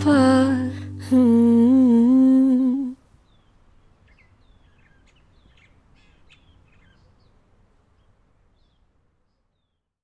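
A woman's voice humming the song's closing melody in long, slightly wavering notes, cut off abruptly about three seconds in. Faint, scattered bird chirps follow, then near silence.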